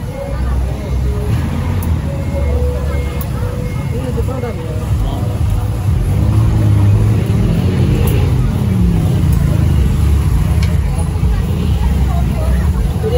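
Street traffic: a steady low engine rumble, with a motor vehicle passing close by and loudest from about six to nine seconds in.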